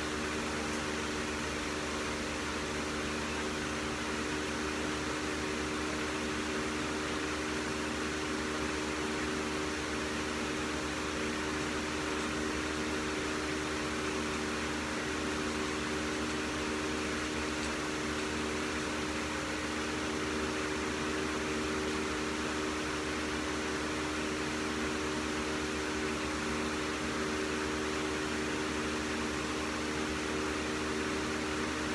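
Steady machine hum with a few fixed tones over an even hiss, unchanging throughout.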